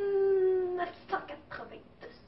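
A girl's voice drawing out one long vowel in a slightly falling pitch for nearly a second, then a few short spoken syllables.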